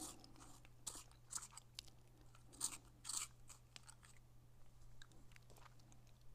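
Faint, irregular short scratches and light clicks, a few each second for the first half and sparser later, over a low steady hum.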